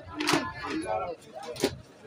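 People talking close by, with two sharp clicks or knocks, one just after the start and one past the middle.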